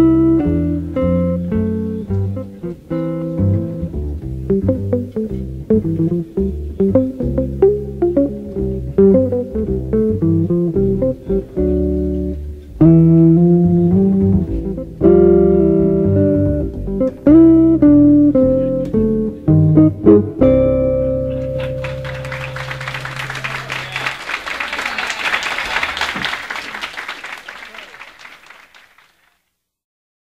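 Jazz guitar and double bass duet playing a calypso tune, with quick plucked notes, ending on a held final chord about twenty seconds in. Applause follows and fades away shortly before the end.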